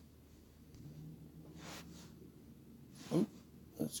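A quiet pause with a man's breath, likely through the nose, about halfway through. A short voiced sound comes near the end, just before he speaks again.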